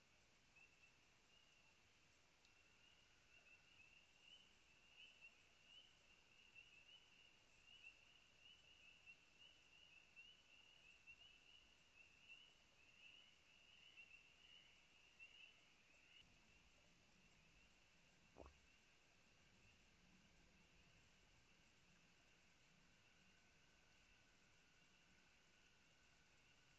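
Near silence: a faint, high-pitched chirping chorus of night-singing creatures at a pond, fading out about two-thirds of the way through.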